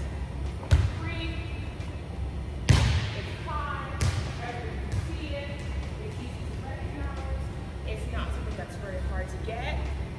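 A volleyball is struck about a second in, then lands with a louder bang on the hardwood gym floor a couple of seconds later and bounces once more. Each impact echoes in the large hall.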